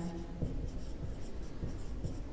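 Marker pen writing on a whiteboard: faint scratching strokes of the felt tip across the board.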